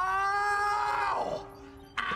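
A man's long, high-pitched scream, held on one pitch for over a second and then falling away; a second scream breaks out sharply near the end.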